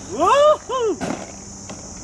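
A person's voice gives two quick high exclamations in the first second, each rising then falling in pitch, followed by a short knock.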